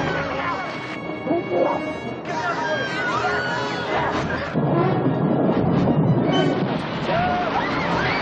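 Several people shouting and screaming over one another in panic, with film score music underneath.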